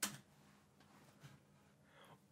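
Near silence: room tone, with one brief faint click at the very start.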